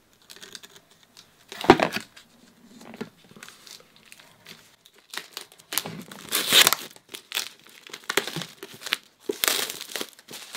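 Plastic shrink-wrap being torn and crinkled as it is peeled off a hardback sketchbook, in irregular bursts, the loudest stretch about six to seven seconds in.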